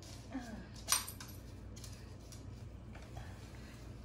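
A single light metallic clink about a second in: a small dog's metal ID tag jingling against its collar ring.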